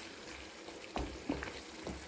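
Chicken sizzling and bubbling in a thick tomato sauce in a non-stick frying pan, with a wooden spatula stirring and knocking against the pan three times in the second half.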